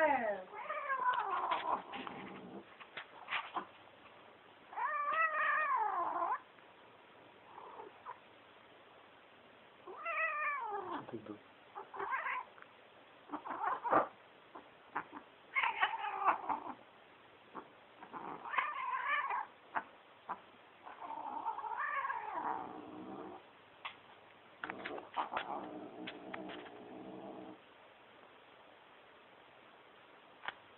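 A domestic cat yowling (caterwauling) in about nine long, drawn-out calls spaced a second or two apart, some wavering and one sliding down in pitch, as one cat holds another pinned down.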